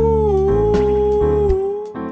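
Sampled vocal instrument (Bloom Vocal Aether) holding one long wordless note, dry with the spring reverb switched off, over a backing track with a steady beat and bass. The note slips down slightly in pitch about half a second in and fades just before the end.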